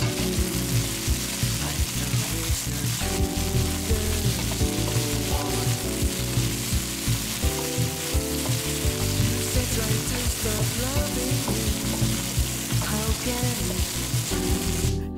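Chopped peppers, garlic, ginger and scallions sizzling steadily in hot oil in a nonstick wok, stirred and tossed with a wooden spatula. Background music plays underneath.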